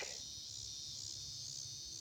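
A faint, steady chorus of crickets, an unbroken high-pitched trill.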